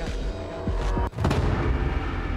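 Game-show background music with a sudden deep boom hit about halfway through.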